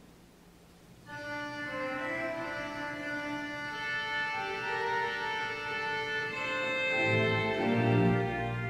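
Church organ beginning the introduction to a hymn about a second in, playing held chords that change step by step, with deeper bass notes coming in near the end.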